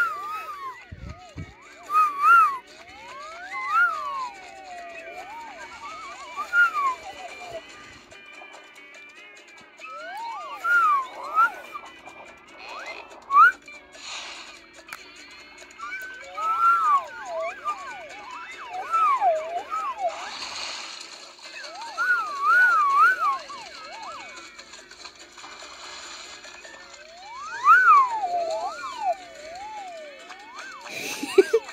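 Slide whistles being played: pure whistle tones gliding up and down in short wavy phrases with pauses between them.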